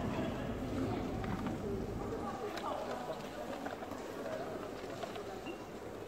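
Indistinct voices talking in the background over steady ambient noise, with a few faint clicks.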